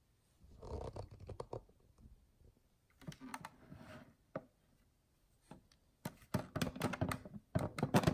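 Plastic clicks, taps and scrapes from handling a water filter pitcher and its hinged lid, in short scattered groups that grow denser and louder over the last two seconds.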